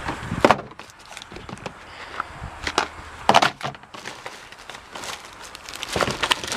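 Hands rummaging through a plastic first-aid box: a plastic lid and cardboard medicine packets and wrappers clattering and rustling in a few short bursts.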